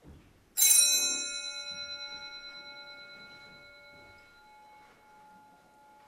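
Altar bell struck once, ringing out in several clear tones that fade slowly with a light wavering beat over about five seconds; the kind of bell rung at the priest's communion.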